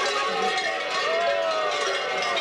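Many large bells worn by babugeri mummers clanging continuously and densely as the dancers jump and shake them, with crowd voices underneath.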